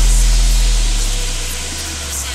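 Electronic dance track in a breakdown: a sustained deep sub-bass note slowly fades under a steady, even hiss, right after the synth lead drops out.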